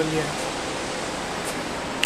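Steady, even rushing of the Ganges river flowing over rapids below.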